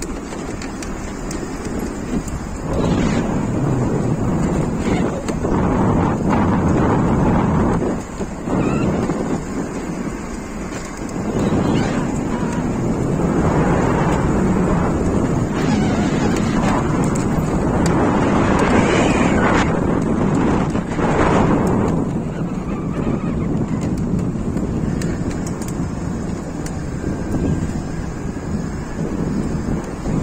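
Wind buffeting the microphone of a moving e-bike, with tyre rumble from the concrete path and cars passing on the road alongside. The noise swells and eases in long waves, with a few brief knocks from bumps.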